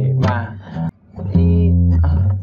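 Steel-string acoustic guitar picked one bass note per chord: a note rings and is cut off just under a second in, and a new low note is struck about a second and a half in as the chord changes quickly.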